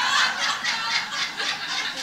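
An audience laughing together at a punchline, a dense wash of many people's laughter.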